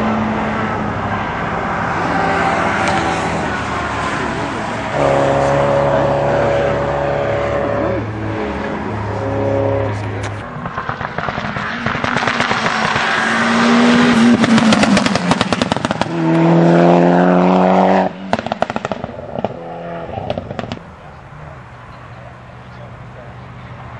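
Classic cars racing past one after another on a closed tarmac road stage, engines revving hard through the bends. The engine notes climb as the cars accelerate away. The sound drops off sharply near the end.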